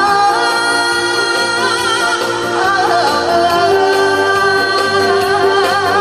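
A woman singing a Korean trot song into a microphone over instrumental accompaniment, holding long notes that take on a wide vibrato about halfway through.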